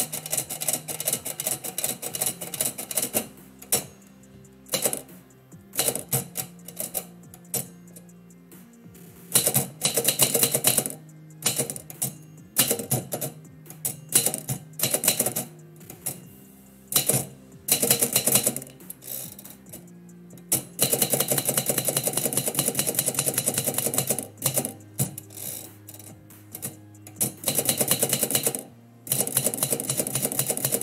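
Typewriter being typed on: bursts of rapid key strikes with short pauses between them, thickest in two long runs in the second half.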